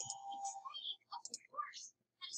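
Faint, indistinct speech in the background.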